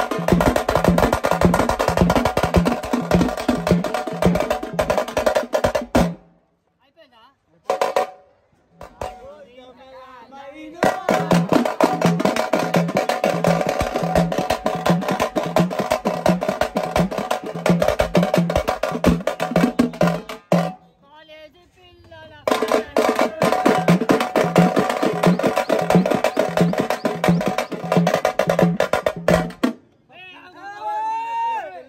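A pad band plays a teenmaar dance rhythm: a fast, steady, pulsing drum beat layered with other music. It stops twice for a second or two, about six seconds in and again about twenty seconds in, then starts up again.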